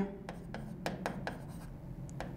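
Marker pen writing on a board: a handful of short, faint scratching strokes as a word is written by hand.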